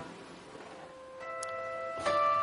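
Acoustic guitar music in a quiet stretch between strums: the loud chord stops at once, a soft held note rings, and a few quiet higher notes come in about a second in.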